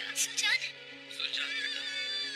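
A horse whinnying loudly in the first half second or so, with a weaker call about a second later, over background music with sustained notes.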